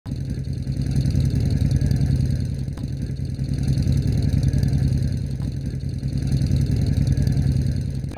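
Several motorcycles riding slowly in a group, their engines running with a low, steady note.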